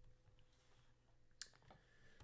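Near silence: room tone, with one faint sharp click at the computer about one and a half seconds in, followed by a few fainter ticks.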